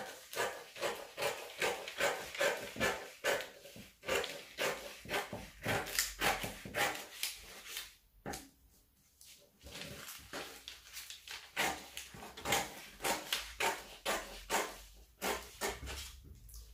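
Dressmaking scissors snipping through two layers of brown pattern paper along a curved neckline, about two to three cuts a second, pausing briefly a little past halfway.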